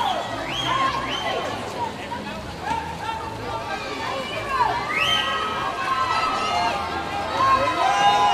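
Spectators and teammates shouting and cheering swimmers on in an indoor swimming hall: several high voices calling over one another in long, rising yells.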